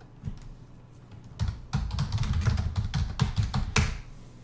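Computer keyboard being typed on: a single key click shortly after the start, then a quick run of keystrokes from about a second and a half in, ending with one louder key press near the end.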